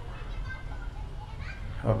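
Faint children's voices chattering and playing among the congregation, over a steady low hum; the noise is enough that the children are asked to be quieted.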